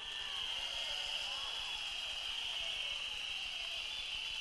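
A rally crowd blowing many whistles together, one steady high-pitched sound, with faint crowd voices underneath.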